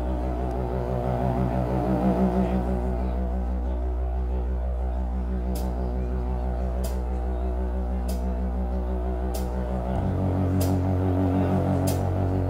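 A live band's instrumental intro: a sustained synthesizer drone that pulses in a steady beat and moves to a new chord about ten seconds in. Faint short ticks come about every second and a half from halfway through.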